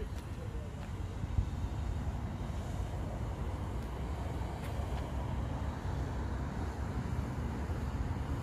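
Steady low rumble of outdoor ambient noise, with one short click about a second and a half in.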